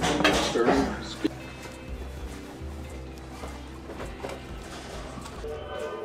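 A man's voice for about the first second, then quiet background music with held notes over a low steady hum.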